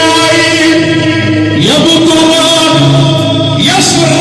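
Loud amplified Arabic band music with a man singing; his line slides upward about one and a half seconds in and again near the end.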